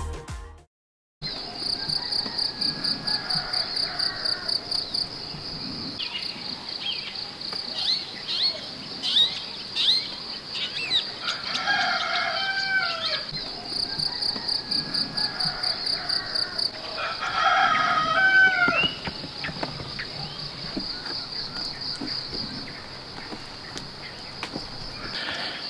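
Rural morning ambience: insects chirping in a steady, fast-pulsing high chorus, a few short bird whistles, and a rooster crowing twice, about halfway through and again some six seconds later.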